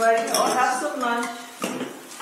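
Children's voices chattering with the clink and clatter of bowls and dishes on a table, and one sharp knock about one and a half seconds in.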